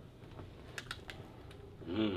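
A few faint, quick clicks in a quiet pause, with a brief murmur of a voice at the very end.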